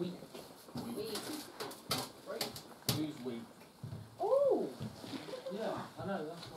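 Low, indistinct voices with several sharp clicks, and a drawn-out voice sound that rises and then falls in pitch about four seconds in.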